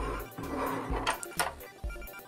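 Hard plastic toy jet being handled and turned over in the hands, with a few light plastic knocks in the second half.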